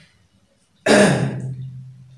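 A man clears his throat about a second in: a sudden rough onset that runs into a short, steady hum of the voice and fades.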